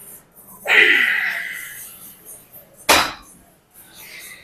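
A strained grunt of effort, about a second long and falling in pitch, followed near the end by a single sharp clank of the plates of a gym leg machine's weight stack touching down.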